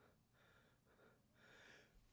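Near silence, with only a few very faint breaths or breathy laughs into the microphone.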